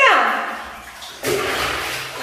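A child drops into a full bathtub about a second in, with a sudden splash and then water sloshing in the tub.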